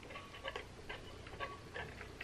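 A person drinking from an insulated tumbler through a straw: faint soft clicks of sips and swallows, about two a second.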